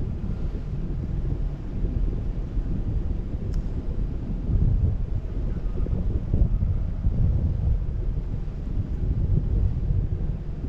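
Wind buffeting the microphone of a camera flying with a parasail high over the sea: a steady, deep rumble that swells and eases in gusts.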